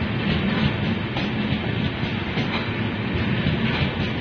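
Express train coaches rolling along the platform: a steady rumble of wheels on rail with scattered clicks as the wheels cross the rail joints.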